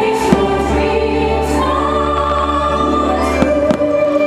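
Aerial fireworks shells bursting with sharp bangs, one just after the start and two close together near the end, over loud choral and orchestral music from the show's soundtrack.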